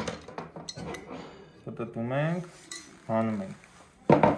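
Steel parts of a Kalashnikov-pattern rifle's bolt carrier group clicking and clinking as they are handled and taken apart by hand, with the bolt coming out of the carrier. There is a quick run of small metallic clicks in the first two seconds, then a few scattered clicks.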